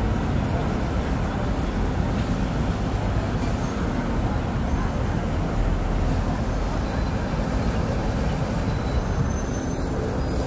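Steady roar of busy city street traffic, with city buses among the vehicles.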